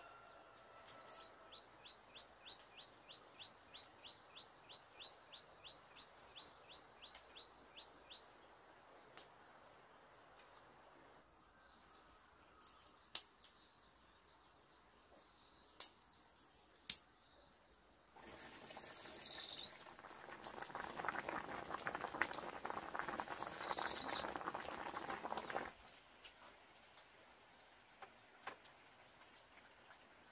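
Birds chirping faintly: early on one bird repeats a short high note about four times a second, with a rising call over it now and then. In the second half a louder steady hiss lasts about eight seconds, with more high calls over it.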